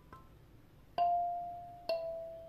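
A 17-key mahogany kalimba (thumb piano) plucked by thumb on its metal tines: a faint note just after the start, then two clear notes about a second in and near the end, each ringing and slowly fading.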